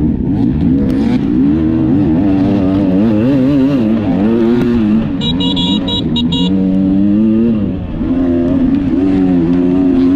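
Dirt bike engine under throttle on a hill climb, its revs rising and falling constantly. A brief high-pitched whine cuts in about five seconds in and lasts just over a second.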